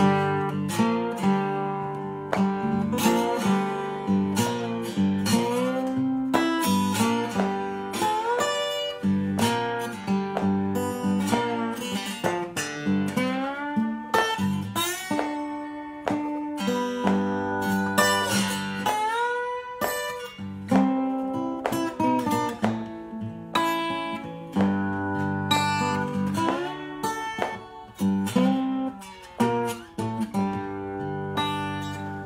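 Acoustic guitar played with a slide, finger-plucked in a blues style: melody notes glide up into pitch over repeating low bass notes.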